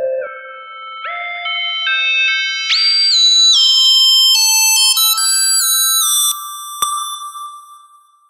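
Synthesizer lead melody played back from an FL Studio project: single notes that glide from one pitch to the next, climbing higher and growing brighter over the first half, then fading out over the last couple of seconds, with a sharp click a little before the end.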